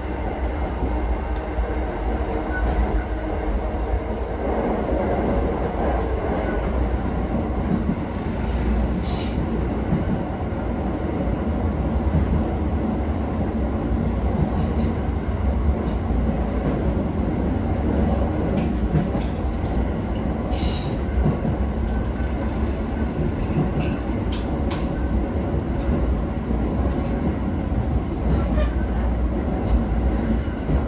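Interior running noise of a JR 209 series 500 commuter train car under way: a steady rumble of wheels on rail and running gear. A faint whine fades out in the first few seconds, and a few sharp clicks come about a third and two-thirds of the way in.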